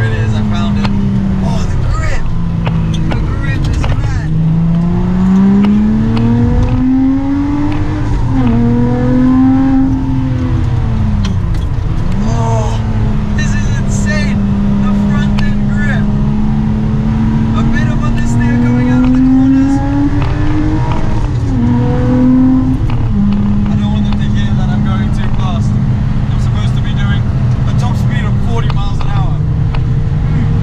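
Lotus Exige Sport 380's supercharged V6 under hard acceleration on track, the engine note climbing through the revs and dropping sharply at each upshift, several times, with steadier stretches at constant speed in between.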